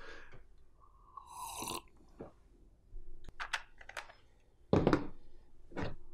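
A person chewing a crunchy snack, with a drink from a glass about a second in, then a few short clicks and a knock near the end as small framed pictures are set down on a table.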